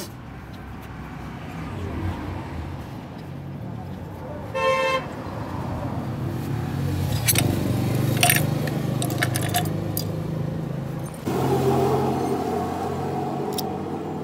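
Background road traffic with engines running, a short vehicle horn toot about five seconds in, and a few sharp clinks as metal clutch parts are handled. A louder engine sound comes in suddenly near the end.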